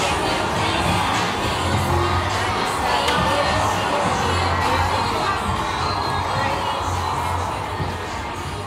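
Nightlife street ambience: music with a steady pulsing bass playing from the bars, mixed with the chatter of many people's voices.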